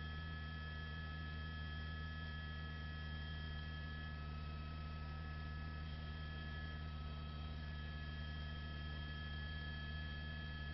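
A faint, steady low hum with a few thin, steady high tones above it, unchanging throughout.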